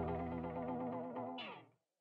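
The song's final held chord on effects-laden electric guitar, wavering with a chorus shimmer and fading. A brief high sweep comes about one and a half seconds in, then the music cuts off.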